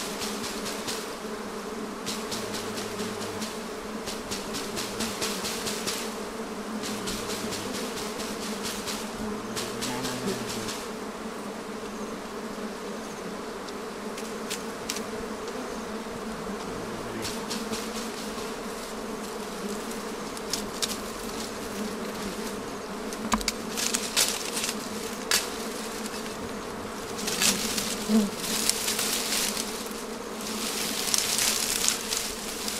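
A swarm of wild honey bees buzzing steadily around their exposed comb. Sharp clicks and rustles come in a cluster near the end.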